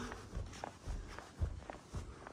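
Footsteps climbing carpeted stairs: a few soft, dull footfalls.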